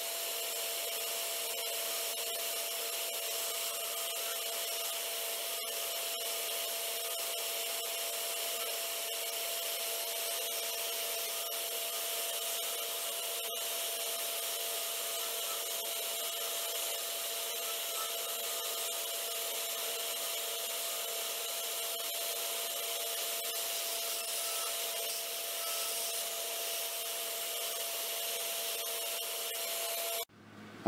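Wood lathe running with a steady hum while a hand-held turning tool cuts a spinning olivewood blank, a continuous scraping hiss as shavings come off.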